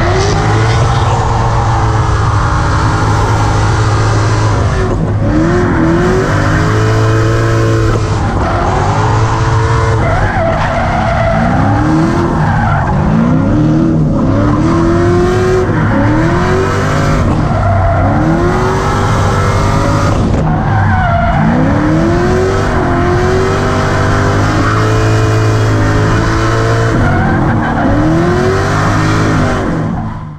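A drift car's engine revving hard, its pitch climbing again and again as the throttle is worked through a long slide, with the tyres squealing. It is heard close up from the outside of the car.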